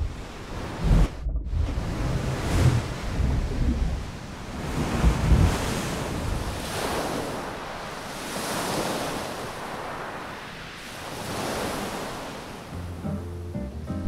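Ocean surf: waves breaking and washing up a shore, swelling and fading every two to three seconds.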